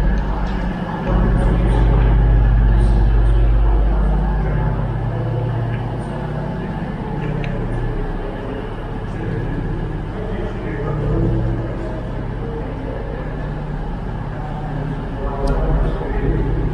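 Class 221 Super Voyager's underfloor diesel engines idling at the platform: a steady low hum, loudest in the first few seconds and quieter afterwards.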